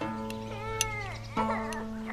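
Soundtrack music with held notes. About half a second in, a cat meows once, a call that rises and then falls.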